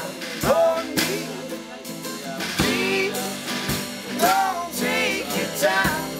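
Unplugged acoustic string band playing live: acoustic guitars, mandolin and upright bass over a small drum kit, with voices singing.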